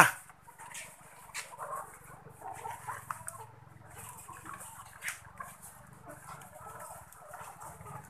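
A flock of caged ready-to-lay hens pecking at feed in metal troughs: scattered sharp pecking clicks over faint, irregular hen calls.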